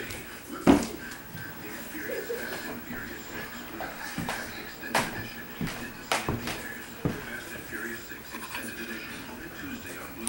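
Television commercial playing in the background, speech over music, broken by several sharp thumps. The loudest thump comes about a second in, with others about halfway through.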